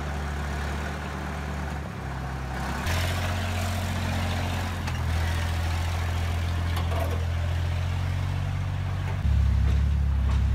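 Ural timber truck's diesel engine running under load as it drives through deep mud: a steady low drone that gets louder about three seconds in and again near the end.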